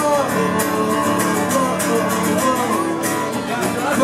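Acoustic punk song played live: a steel-string acoustic guitar strummed in a steady rhythm, with a man singing over it.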